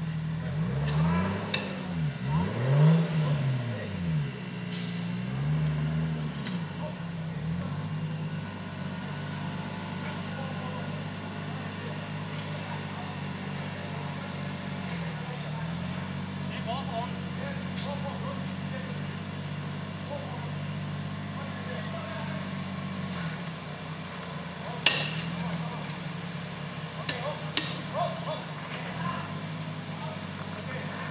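Off-road 4x4's engine revving up and down several times in the first six seconds as it crawls over rocks, then held at a steady speed for the rest. A few sharp knocks come through as the vehicle works over the rocks.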